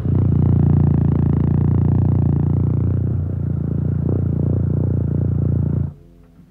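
A loud, dense low rumble that starts abruptly and cuts off abruptly just before the end.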